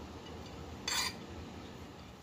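One brief scrape about a second in as diced onion and shredded carrot are pushed off a plate into a bowl of shredded cabbage and broccoli, over a low background.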